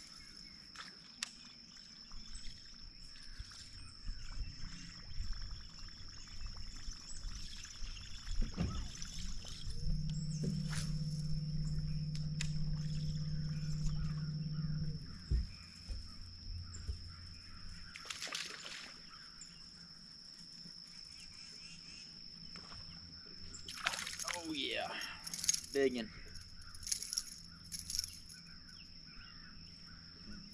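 Outdoor ambience on a bass boat during a buzzbait retrieve: a steady high-pitched whine throughout, a low steady motor hum for about five seconds midway that starts and stops abruptly, and scattered water sloshing. Near the end a bass is hooked and a man says "Biggin".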